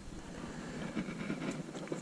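Wind buffeting the microphone outdoors on a boat, a steady uneven rush with a few faint clicks.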